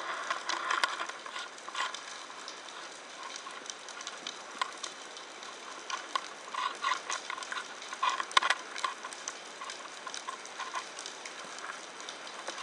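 Underwater crackling: a dense, irregular patter of small clicks and pops picked up by a camera in its underwater housing, with a few louder clicks and knocks about a second in and a sharp one a little past eight seconds.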